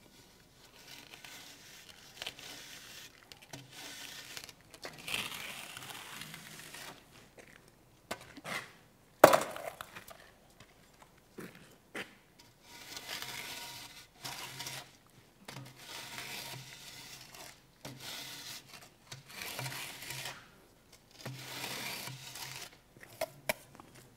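Straightedge drawn across fresh cement-mortar plaster between wooden guide strips in repeated scraping strokes, striking off the excess mortar of the finishing coat. A single sharp knock about nine seconds in.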